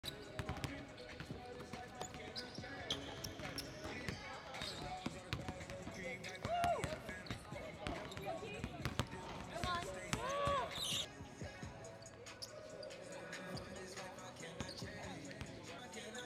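Basketballs bouncing on a gym floor in repeated thuds, with indistinct voices of players and coaches calling out in the background.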